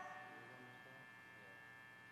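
Near silence in a pause of a live band: the last notes of a chord fade out in the first half second, leaving a faint steady electrical hum from the amplification.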